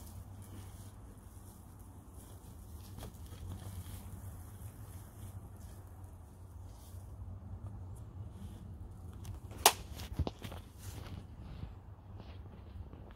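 Straw being pulled and torn by hand from a strawbale wall, rustling and crackling unevenly, with a sharp knock near the end and a low steady hum underneath.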